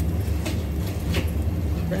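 Steady low machine hum, with a couple of faint rustles from a plastic-wrapped salami being turned in the hand.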